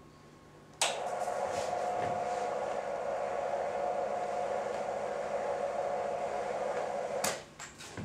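Electric motor of a motorized sliding blackboard running steadily, switching on abruptly about a second in and cutting off sharply near the end.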